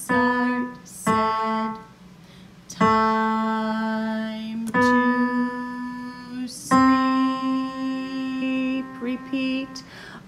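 Digital piano on its grand piano voice playing slow single notes in the left hand around middle C, the C–B–A figure of a beginner piece. Each note is struck separately, and some are held for about two seconds.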